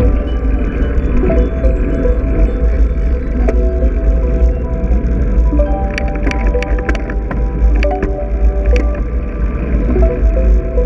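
Background music: a melody of short held notes over a steady low rumble, with a cluster of sharp clicks about six to seven seconds in.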